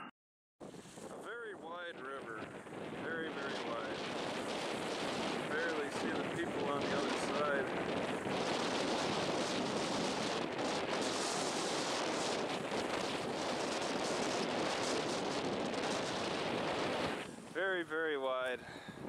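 Steady wind blowing across the microphone, mixed with waves on a choppy river, starting after a brief moment of silence.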